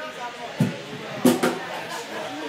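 Indistinct talk from people in the room, with two short loud knocks, one about half a second in and another a little after a second in.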